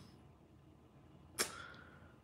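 Near silence, broken by a single short, sharp click about one and a half seconds in that fades away over a fraction of a second.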